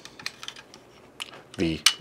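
A few light clicks and taps from a camera tripod's ball head being handled, with a sharper click near the end.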